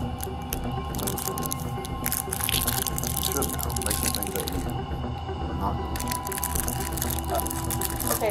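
Low, steady background music with a held high note, under quiet speech. Many short clicks and crackles run over it, typical of a plastic mouthpiece wrapper being handled.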